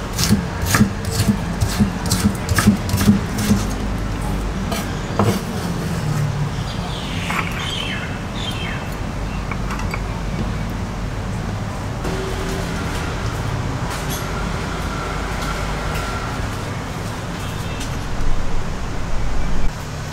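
Kitchen knife chopping ginger into shreds on a thick wooden chopping board: quick, even knocks, about three a second, for the first five seconds, then only a few scattered taps. A low steady hum runs underneath.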